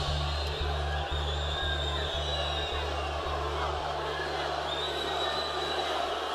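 Live band holding a low bass note that pulses about twice a second for the first few seconds, then sustains and stops just before the end, under the noise of a large concert crowd.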